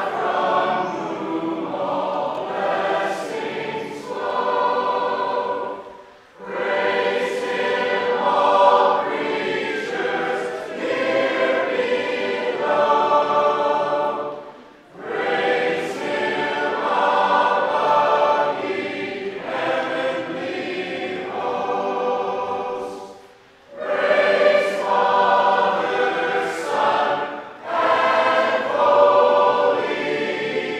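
A church congregation singing a hymn together, many voices in long phrases, with short breaks between verses or lines about every eight or nine seconds.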